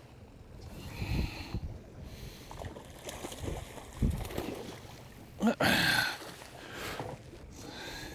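A hooked salmon thrashing and splashing at the surface beside a boat, with water slapping the hull in irregular surges. A louder, brief sound comes about five and a half seconds in.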